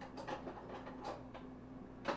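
Several faint clicks and light knocks of kitchen items being handled, over a steady low hum.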